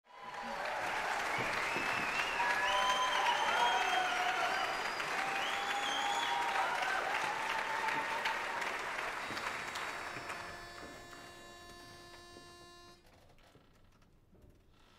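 Audience applauding and cheering, with whistles, fading away over the last few seconds. Near the end a single steady, reedy pitch-pipe note sounds for about three seconds and stops sharply, giving the barbershop chorus its starting pitch.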